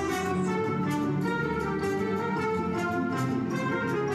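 Orchestral music playing steadily from a CD in a Bose Wave Music System IV.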